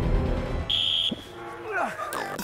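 A referee's whistle blows once, short and shrill, starting the ssireum bout, over background chatter and music. Near the end comes a falling swoop in pitch.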